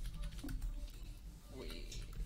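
Computer keyboard typing: scattered light key clicks over a steady low hum.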